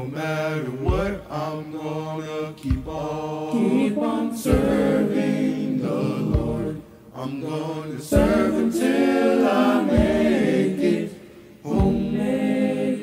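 Youth choir singing a gospel song a cappella in several-part harmony, with a low thump marking the beat about every two seconds.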